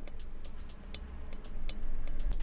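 A simple hi-hat and cymbal loop playing through the Baby Audio Baby Comeback delay plugin set to its 'Cheap' flavour, so the echoes come back lo-fi and grittier. Short crisp hat ticks, several a second, over a low hum.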